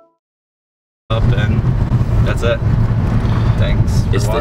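Silence for about a second, then the steady low rumble of a car's interior noise cuts in suddenly and runs on.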